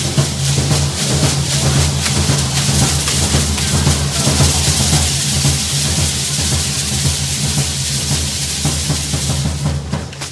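Matachín dance drums beating a fast, steady dance rhythm, with a dense rattling from the dancers' hand rattles over it; the drumming breaks off at the very end.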